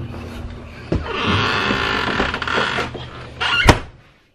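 Knocks and rustling as someone comes in through the door of a horse trailer's living quarters. The loudest is a single sharp bang near the end.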